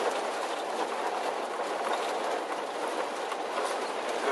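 Steady road and drive noise inside a moving RV's cab, a continuous rushing rumble with faint ticks and rattles running through it.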